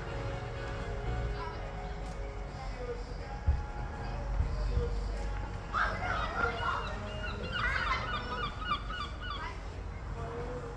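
A bird calling in a rapid run of harsh, honking notes over the last four seconds or so, over a low outdoor rumble.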